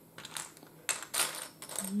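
Loose plastic Lego bricks clicking and clattering against each other as fingers rummage through a pile of them, a few short clatters.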